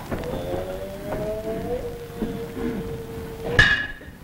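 Kabuki nagauta accompaniment on an old, noisy recording: a long held note with a slightly bending pitch, then a single sharp strike with a brief bright ring near the end.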